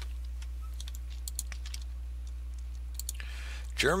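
Scattered light clicks at a computer over a steady low hum.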